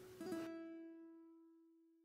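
Background acoustic music: a single plucked string note rings out shortly after the start and fades away within about a second.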